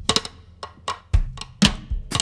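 Drum kit played sparsely: short, sharp stick strokes at an uneven spacing, with two deeper hits in the second half, the later one the loudest.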